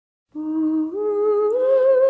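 Intro of a 1960s country record: after a moment of silence, a hummed vocal line rises in three held notes, the last one wavering slightly.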